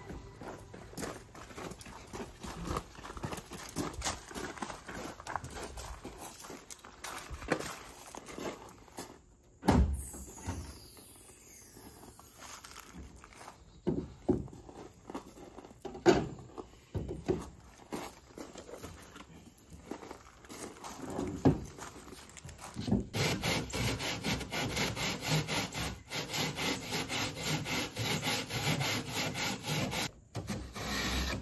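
Scattered knocks and scrapes as a faux stone panel and tools are handled and set down on a pickup's plastic-lined tailgate. From about two-thirds of the way in, a hand saw cuts through the panel in quick, even back-and-forth strokes.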